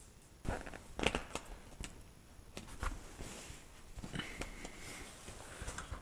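Scattered handling sounds as a canvas tractor-canopy tarpaulin is fitted to its frame: light clicks and knocks, with the loudest about a second in, and soft rustling of the canvas.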